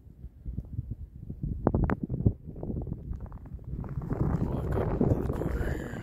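Wind rumbling and buffeting on a phone microphone outdoors in a snowfall, with irregular knocks and a few sharp clicks about two seconds in. The noise thickens and grows louder over the last two seconds.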